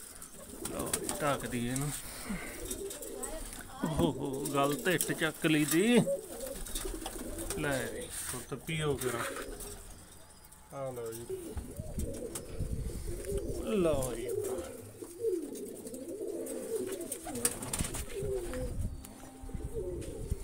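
Domestic pigeons cooing over and over, several calls overlapping, with a brief lull about halfway through.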